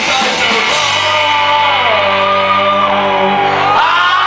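A folk-punk band playing live on electric guitars and drums, with shouted singing. About a second in the band settles onto a long held chord while a high line slides down over it, and the chord breaks off shortly before the end.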